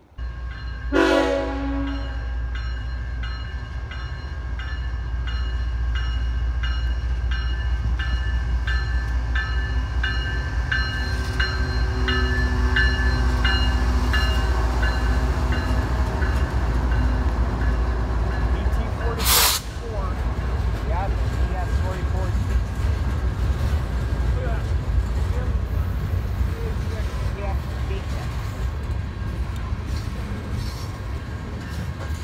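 BNSF freight locomotives passing close by, with a short horn blast about a second in and the locomotive bell ringing steadily for the first twenty seconds or so. Then the tank cars of the oil train roll past with a deep rumble and faint wheel squeals, broken by a sharp loud burst about two-thirds of the way in.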